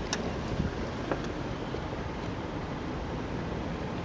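Steady outdoor background noise, a low rumble and hiss with no speech, with a couple of faint clicks as the camera is carried to the open car door.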